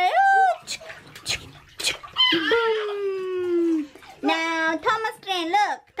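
A young child's high-pitched wordless voice calling out, with one long call that falls in pitch, and bath water splashing between the calls.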